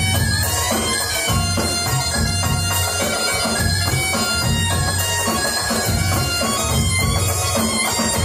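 Oriental dance music led by a reedy wind instrument, with held notes over a repeating low rhythmic pulse.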